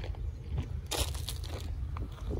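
Low, steady rumble of a consist of diesel freight locomotives running, with a short crackling noise about a second in.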